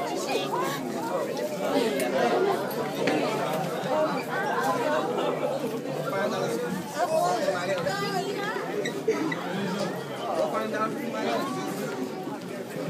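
Many students talking at once in a crowded school hallway: a steady babble of overlapping voices with no single clear speaker.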